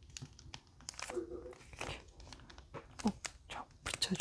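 Folded origami paper rustling and crinkling faintly in short crackles under the fingers as the paper cicada is pressed flat and its loose middle is stuck down.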